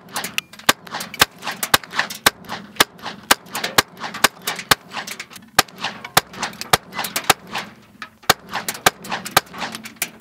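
A .22 firearm fired in a rapid string of shots, about three to four a second, each a sharp crack.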